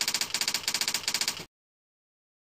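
Typewriter-typing sound effect: a rapid clatter of sharp key clicks, about ten a second, that stops abruptly about one and a half seconds in.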